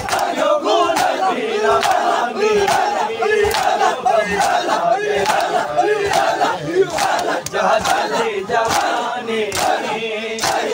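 A crowd of men loudly chanting a noha, a Shia lament, together. Hands strike chests in a steady, regular beat (matam) under the voices.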